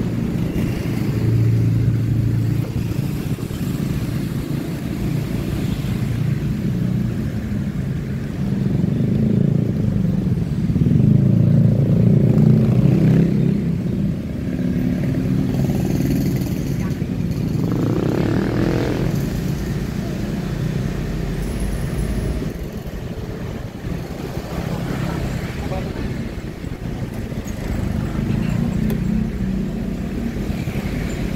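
Steady low engine and road noise from a moving car, with motorcycles and scooters running close alongside. About eighteen seconds in, an engine note rises sharply.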